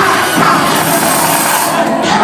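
Loud live music over a club sound system, with an MC's voice through a handheld microphone and a crowd.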